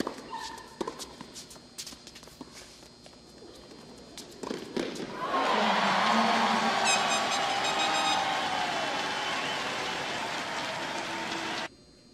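Tennis ball struck by rackets in a rally: several sharp hits over the first five seconds. Then the crowd breaks into loud cheering and applause at the end of the point, cut off abruptly near the end.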